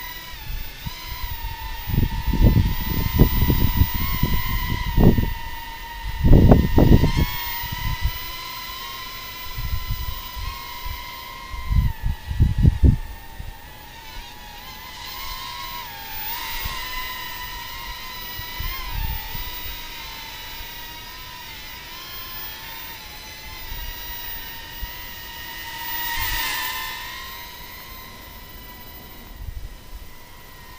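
U.S. Army Flare Drone's brushed motors and propellers in flight: a steady high-pitched whine that wavers up and down in pitch as the throttle changes. Low rumbling bursts on the microphone come several times in the first half and are the loudest moments.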